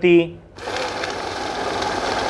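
Danon GD-251 note counting machine starting up about half a second in and running a deck of banknotes through its rollers at speed: a steady, rapid riffling whir of notes being fed and stacked.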